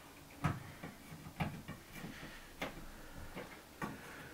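Four soft clicks or taps, about one a second, over quiet room tone.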